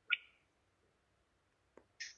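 Near silence in a pause between spoken sentences: a brief high sound just after the start, and a single faint click near the end.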